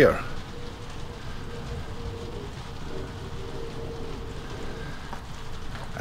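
Steady rain falling on the roof of a wooden barn, heard from inside as an even hiss.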